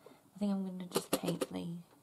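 A woman's voice: a few short words spoken quietly and indistinctly.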